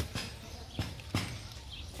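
A few scattered light clicks and taps from hands handling a cloth tape measure around a bonsai tree trunk, over a low steady hum.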